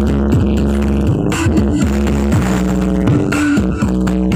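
Loud electronic dance music with very heavy bass, played through a truck-mounted sound system of stacked subwoofer cabinets.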